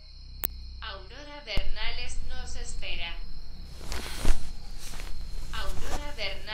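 A high, wavering voice without clear words, with a sharp click about half a second in and a thump about four seconds in.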